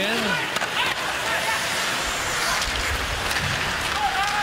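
Ice hockey arena sound during live play: a steady crowd murmur with skates scraping the ice and a few sharp clicks of stick and puck.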